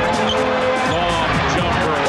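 Background music over basketball game sound, with a basketball bouncing on the hardwood court.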